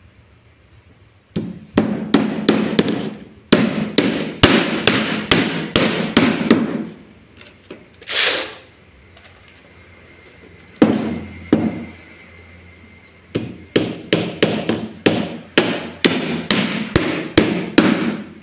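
A hammer nailing timber formwork boards together. Quick runs of sharp blows, about three a second, come in several bursts with short pauses between.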